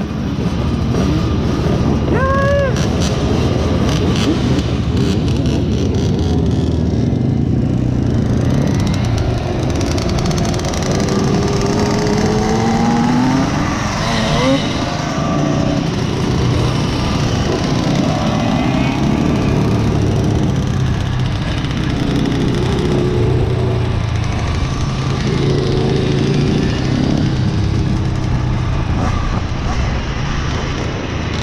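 A group of Simson two-stroke single-cylinder mopeds running close by as they set off and ride together, with engines revving up in rising pitch around the middle.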